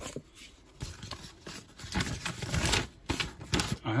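Packaging being handled in a cardboard box: a foam sheet lifted off plastic-wrapped packing, giving irregular rustling and scraping with a few light knocks, louder in the second half.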